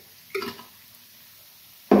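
Sauce jar knocked once against the frying pan as the last of the curry sauce is emptied out, a short ringing clink, with speech starting just before the end.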